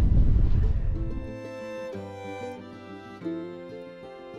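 Wind buffeting the microphone for about the first second, then fading out as background music takes over: string instruments holding sustained notes, with a few plucked notes.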